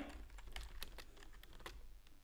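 Typing on a computer keyboard: a run of faint, irregular keystrokes.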